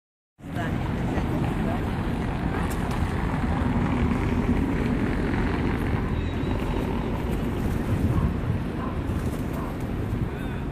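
Steady low rumble of wind buffeting the microphone, with faint voices in the background.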